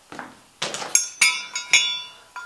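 Two short scuffs, then three sharp metallic clinks about a quarter to half a second apart, each leaving a brief ringing tone.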